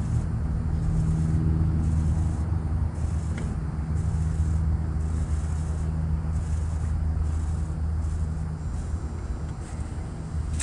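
2005 Trane Odyssey 15-ton heat pump outdoor unit running in heat mode: a steady low hum from the compressor, with the rush of its fans.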